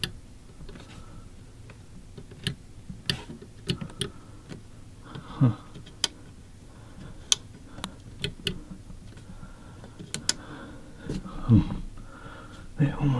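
Buttons and key switch on a wall-mounted Lighting & Lowering Systems raise/lower control panel being pressed and turned: a dozen or so sharp clicks scattered through, some in quick pairs.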